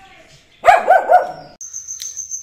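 Dog barking three times in quick succession. A steady high-pitched insect-like trill starts near the end.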